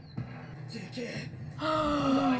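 A woman gasps sharply in surprise, then says "oh"; soft music plays underneath, and a loud shouted line of anime dialogue starts near the end.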